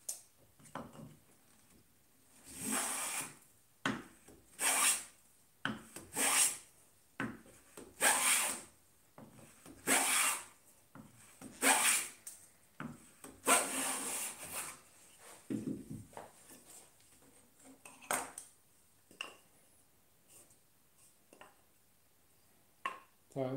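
Metal bench plane cutting along the edge of a wooden board in about seven separate strokes, roughly two seconds apart, the last one longer, as the edge is planed down to a gauge line and brought square. After that, a few quieter knocks and rubs.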